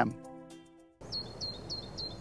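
Background music fading out over the first second. Then faint outdoor noise with a bird giving a quick series of about four high chirps, roughly four a second.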